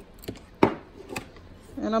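A few light, sharp clicks and taps of kitchen handling, the loudest a little past halfway, before a woman starts speaking at the very end.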